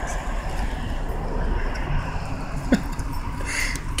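Steady low outdoor rumble, with one short rising squeak about two-thirds of the way in and a brief rustle near the end.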